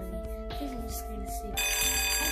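An electronic wake-up alarm starts suddenly about one and a half seconds in: a loud, high, steady ringing of several tones at once. Background music plays under it.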